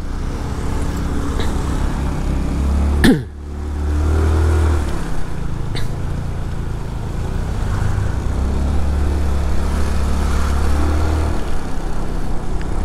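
Motorcycle engine running and road noise from riding slowly through traffic. The engine swells in two stretches, and there is one sharp falling sweep about three seconds in.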